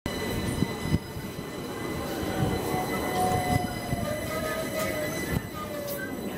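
London Overground Class 378 electric train at the platform, with a steady high-pitched electrical whine and a faint tone sliding slightly down in pitch through the middle. Two sharp knocks sound within the first second.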